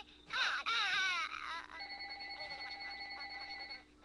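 A high-pitched voice crying out with wavering pitch for about a second and a half, then a steady electronic ringing tone with a fast flutter for about two seconds that cuts off shortly before the end.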